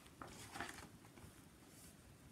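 Brief rustle of a book's paper pages being handled, lasting under a second, in an otherwise near-silent room.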